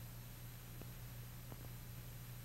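Background noise of an old film soundtrack: a low steady hum under a faint hiss, with three faint clicks in the second half.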